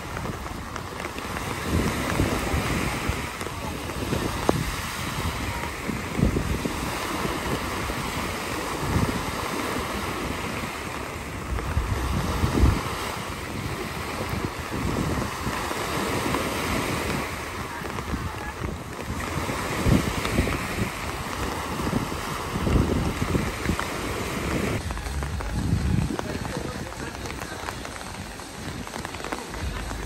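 Wind buffeting the phone's microphone in uneven gusts over a steady rush of water from flooding and heavy rain.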